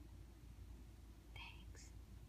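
Near silence with a low steady hum and a brief, faint whisper about one and a half seconds in.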